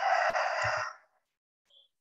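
A woman's breathy, drawn-out vocal sound between sentences, cutting off about a second in to dead silence.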